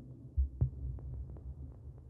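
Fading tail of a melodic house track: a low Moog Mother-32 synth bass throbbing and dying away. It has two low thumps about half a second in and soft ticks about three a second.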